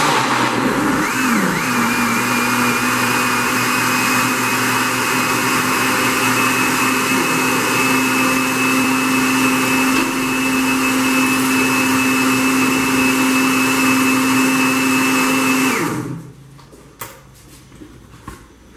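Countertop blender motor puréeing chopped onions in chicken-breast broth. It spins up to a steady pitch over the first two seconds, runs evenly, then is switched off about sixteen seconds in and winds down.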